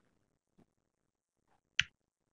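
A single short, sharp click near the end, against near silence with a couple of faint small sounds before it.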